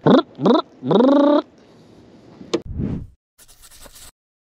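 A man laughing, a few short laughs at the start. About two and a half seconds in comes a sharp click and a short whoosh.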